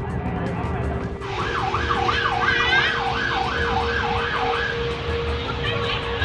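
Emergency vehicle siren in a fast wail, rising and falling about three times a second. It starts about a second in and stops near the five-second mark, over a low rumble.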